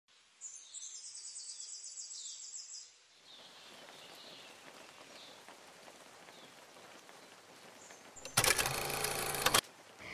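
Faint nature-style ambience added to an opening title sequence. A high, rapidly pulsing trill runs for the first few seconds and faint bird-like chirps are scattered through it. Near the end a louder, dense, buzzing transition sound effect lasts about a second and a half, then cuts off suddenly.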